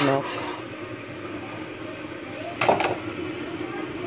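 Coconut milk being added to a steel pot of stew peas and meat: a low steady hiss, with one short scrape against the pot about three seconds in.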